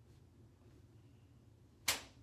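Faint room tone, then a single sharp click near the end, with a short ring-out.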